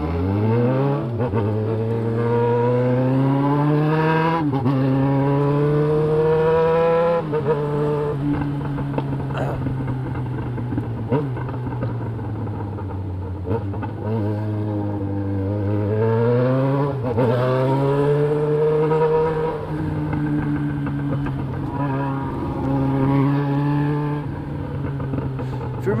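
Yamaha XJ6 600 cc inline-four with a straight-through 4-into-1 exhaust, heard from on the bike, accelerating hard: the pitch climbs in several pulls and drops back at each gear change, with stretches of steady cruising between the pulls.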